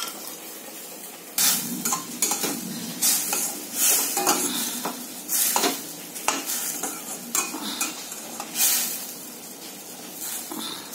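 Steel spatula scraping and stirring chopped pumpkin in a stainless steel kadai, over a steady sizzle of frying. The first second or so is just the sizzle; then come repeated scraping strokes against the pan until near the end.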